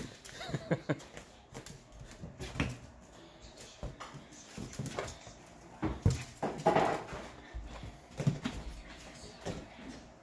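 Yorkshire terrier playing with a latex party balloon: irregular bumps and rubbing of the balloon as the dog noses and bats at it, with paws scrabbling on the floor and the dog's occasional small vocal sounds.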